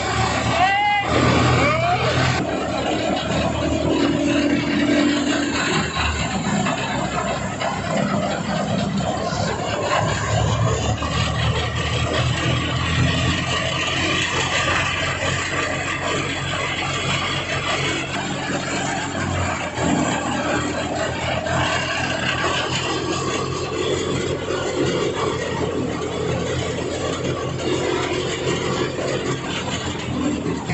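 Tractor-driven wheat thresher running steadily under load as sheaves are fed through it. It makes a loud, even mechanical din with a low engine drone beneath.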